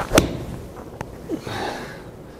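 A 56-degree wedge strikes a golf ball off a hitting mat with one sharp click just after the start. A second, fainter tick follows about a second in.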